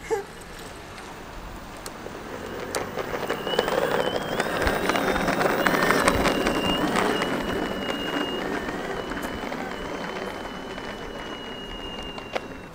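Boosted electric skateboard riding over asphalt: a steady high motor whine with the rumble of the wheels, swelling as the board passes close by about halfway through, then fading as it rides away.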